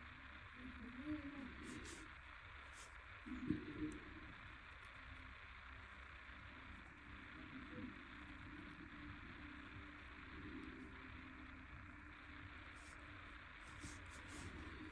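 Faint, muffled voices from a television in the background, in short low snatches, over a steady hiss.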